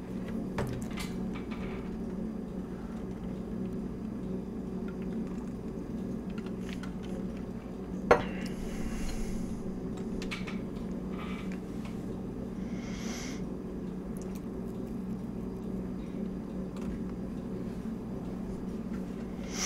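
Steady low hum with scattered faint clicks and light knocks, and one sharper click about eight seconds in.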